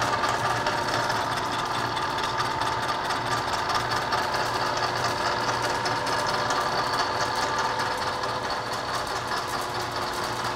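Milling machine running steadily, its cutter taking a light pass on a clamped steering arm.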